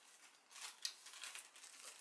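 Faint crinkling of a paper-and-plastic seed packet being handled and opened, with one sharp click a little under a second in.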